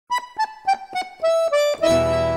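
Piano accordion opening a folk song with a short descending run of about six separate notes, then a sustained chord with bass notes just before the end.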